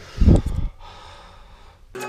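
A person's breath or snort close to the microphone: one short, loud burst about a quarter of a second in, lasting about half a second, then a faint hiss.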